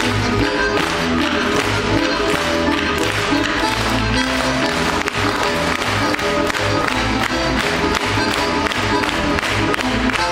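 Russian folk dance music with wooden spoons (lozhki) clacking along in rhythm, played by a spoon ensemble.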